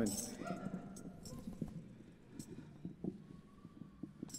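Faint handling noise of a microphone stand being raised and adjusted on stage: scattered light knocks and clicks, with a few brief jingles.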